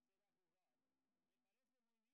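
Near silence: the soundtrack is essentially empty.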